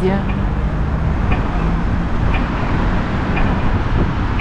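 Wind rumbling on the microphone over steady city street traffic.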